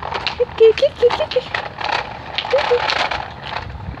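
Wooden push-along baby walker loaded with loose wooden blocks rolling over rough asphalt: a rapid, irregular clatter of its wheels and the rattling blocks.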